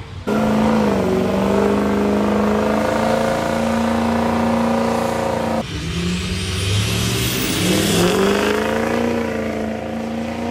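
Drag-racing engines at full throttle. One sets in suddenly and holds a steady high pitch for about five seconds. After a break, a pickup truck and a sedan launch off the line, their engines climbing in pitch with a rising whine, dipping at a gear change and climbing again.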